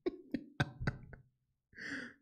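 A man laughing quietly under his breath: a few short breathy bursts about four a second, then a pause and a breathy sigh near the end.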